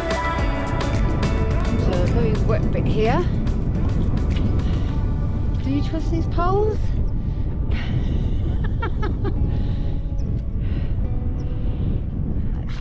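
Wind buffeting the microphone with a steady low rumble. Background music fades out at the start. A few short rising calls sound about three, six and eight seconds in.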